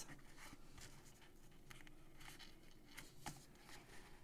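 Near silence, with faint rustles and light taps of cardstock as a folded paper box is pressed into shape by hand; one tap a little past three seconds in is slightly louder.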